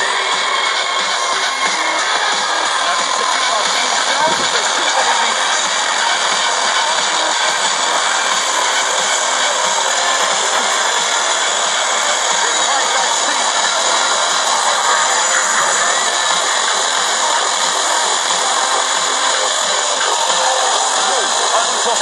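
Tecsun PL-600 receiver's loudspeaker on a weak FM signal at 97.0 MHz: a steady wash of hiss and static with broadcast voice faintly under it. The noise comes from the signal being barely received and crowded by interference from a stronger station on 97.1.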